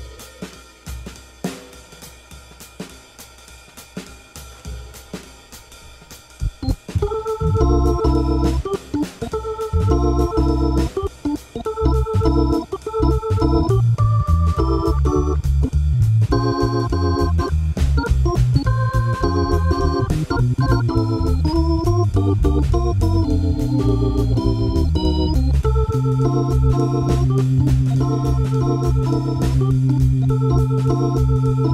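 Hammond B3 organ playing an up-medium swing, chords over a bass line, coming in loudly about seven seconds in after a few seconds of light clicking.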